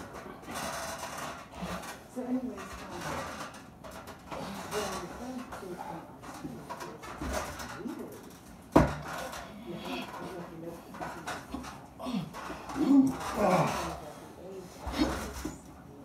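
Two men grunting and straining in an arm-wrestling hold, with short voiced efforts that bend up and down in pitch and grow stronger near the end. A single sharp knock about nine seconds in is the loudest sound.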